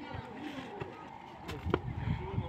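A long jumper's feet thud into the sand pit in two sharp strikes about one and a half seconds in, over the chatter of spectators crowded around the pit.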